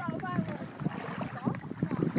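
Canoe paddles dipping and water sloshing, with wind buffeting the microphone and a brief faint voice near the start.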